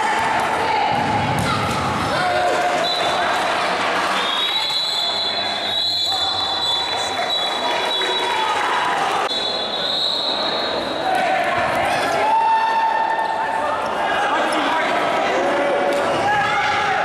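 Futsal match sounds in an echoing indoor court: the ball being kicked and bouncing on the hard floor, with players shouting. Long high-pitched tones sound between about three and ten seconds in.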